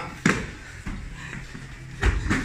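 A single sharp thump about a quarter of a second in, then a softer knock and shuffling: a squatting training partner shoved backwards onto foam floor mats.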